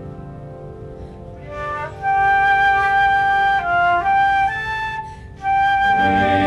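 The tail of a piano chord fades away, then a concert flute enters about two seconds in, playing a slow melody of long held notes with a short break near the end.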